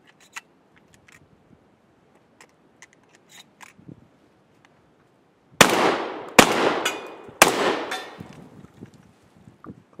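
Shotgun firing three shots less than a second apart, each echoing and dying away over the next second, after a few light clicks of handling.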